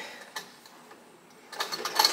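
Antique Singer 27 vibrating-shuttle sewing machine, treadle-driven: one click about a third of a second in, then the machine starts running near the end with a rapid clicking rattle.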